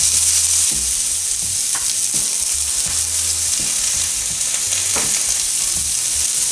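Chopped onion frying in butter in a hot skillet at medium-high heat: a steady, even sizzle, with a couple of faint clicks.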